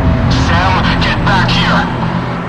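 Deathstep electronic music: a sustained heavy bass with a distorted, voice-like wobbling sound sweeping rapidly up and down over it for most of the two seconds.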